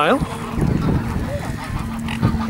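Wind rumbling on a handheld camera's microphone, with geese and swans calling faintly in the background.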